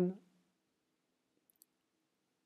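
The tail of a spoken word, then near silence with a single faint click about one and a half seconds in.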